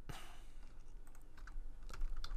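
A few faint, scattered clicks of a computer keyboard, with a sharper click near the end.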